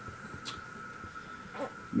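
A quiet pause in a small room, with a faint steady tone underneath. About half a second in comes a brief rustle of fabric as a garment is handled, and a short faint sound follows near the end.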